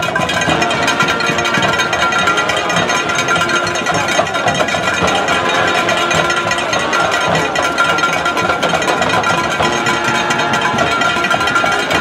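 Marching band playing in the stands: brass holding sustained notes over fast, dense drumming, with crowd voices underneath.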